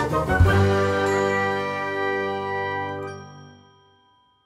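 Short musical jingle for a closing logo, ending on a held chord of many notes that dies away over the last second or so.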